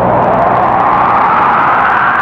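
A loud whooshing noise swell that rises gently in pitch, like a synthesizer sweep, in the instrumental break of a film song. Keyboard chords come in just after it.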